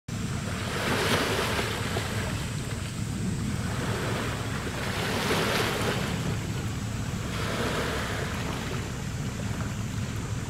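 Small waves washing onto a rocky shore in slow surges every few seconds, over a steady low rumble.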